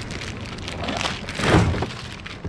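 Loose plastic shrink wrap crinkling and plastic smoothie bottles knocking together as they are handled, with a louder rustle and clunk about one and a half seconds in.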